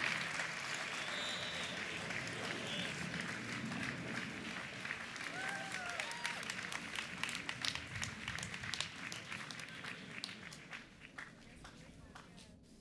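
Audience applauding, with a few voices in the crowd; the clapping thins out and fades away over the last couple of seconds.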